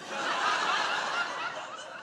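Audience laughing together, many voices chuckling at once; it swells over the first half-second and holds.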